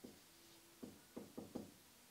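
Faint taps and strokes of a marker writing on a whiteboard, a few quick ones bunched in the second half.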